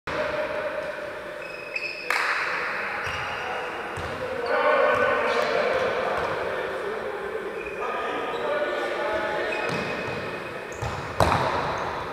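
Futsal ball kicks in a large, echoing sports hall: sharp ball strikes, the loudest about two seconds in and shortly before the end, over players' shouted calls.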